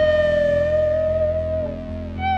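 Electric guitar lead holding one long, sustained note with a slight vibrato, fading out near the end, over a steady band backing.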